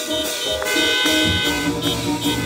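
Live church band playing: a drum kit with cymbals under long held keyboard chords.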